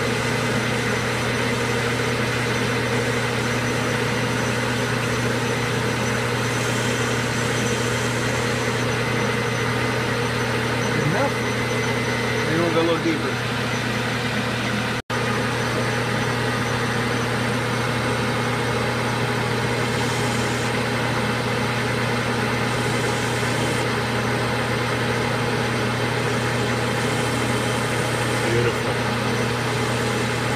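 Metal lathe running steadily with an even motor hum while its cutting tool turns a recess into the face of a spinning metal workpiece. The sound breaks off for an instant about halfway through.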